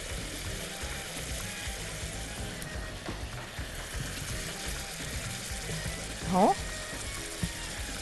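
Boiled pasta being stirred into tomato sauce in a pot with a spatula, the sauce sizzling steadily on the heat.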